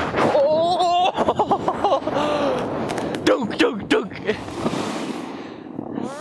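People's voices calling out and exclaiming without clear words, starting with a drawn-out rising call in the first second, over the scraping of a snowboard on snow.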